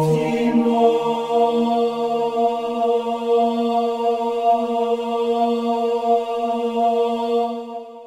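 Sustained synthesizer chord played through a BBD-style chorus effect, emulating a classic Juno-type chorus. The bass note shifts up right at the start with a brief airy swell, then the chord holds and fades out near the end.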